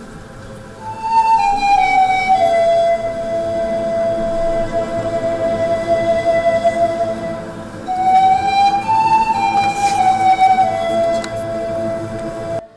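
Nai, the Romanian pan flute made of bamboo, played as the solo voice over a chamber string orchestra. It plays two slow phrases, starting about a second in and again near 8 seconds. Each phrase steps down from a high note to a long held note, while the strings sustain underneath.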